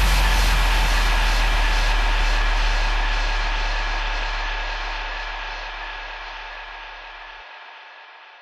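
Closing tail of an electronic dance track: a sustained noise wash with a few held synth tones over a deep sub-bass, fading out steadily. The sub-bass cuts off near the end.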